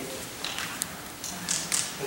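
A few light taps or clicks, about four, over quiet room tone.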